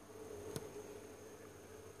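Quiet room tone with a faint steady hum and one short click about half a second in.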